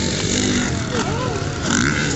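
Stunt motorcycles riding across the arena, their engines running steadily, with a voice over them.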